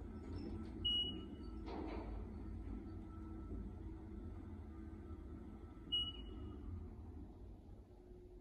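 Traction elevator cab descending, with a steady low hum of the ride. Two short high beeps sound about five seconds apart, with a brief knock about two seconds in. The hum drops away near the end as the car slows to arrive at G.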